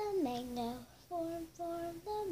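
Young girl singing a short phrase: a note that slides down at the start, then two short held notes.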